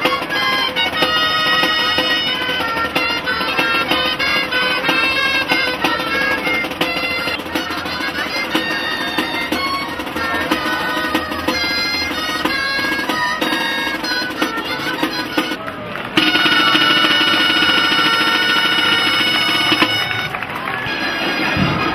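Basque festival street band of reedy pipes and a drum playing a lively melody. About 16 seconds in the sound cuts to louder, held pipe notes.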